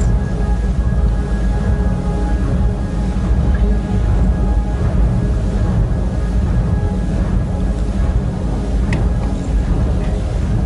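Slow band music from a passing funeral procession, faint held notes over a steady low rumble, as picked up by a phone's microphone out in the street.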